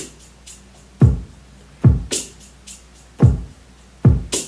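Simple 808 drum-machine beat in a heartbeat pattern: pairs of deep kicks that drop in pitch, about 0.8 s apart, with bright short hits between them trailing off in fading delay echoes.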